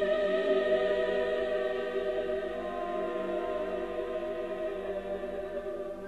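Mixed choir with orchestra holding a quiet sustained chord that eases down a little, in a late-Romantic choral work, heard through an off-air radio recording.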